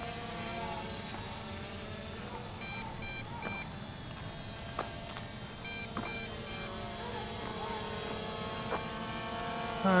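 MJX Bugs 2C quadcopter's brushless motors and propellers buzzing steadily as it hovers and drifts out of control, stuck in return-to-home mode. Twice, a quick series of three high electronic beeps sounds.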